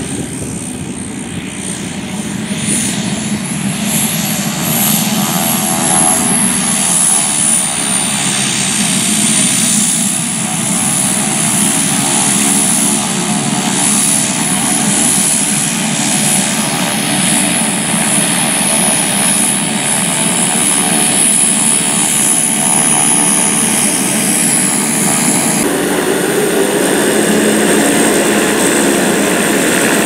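Helio Courier's engine and propeller running at taxi power as the plane taxis, with a high whine that rises a few seconds in, dips, then holds steady.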